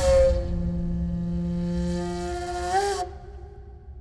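Film background music: sustained, wind-instrument-like held notes over a low drone. Near the end the notes bend briefly up and down in pitch, then fade away.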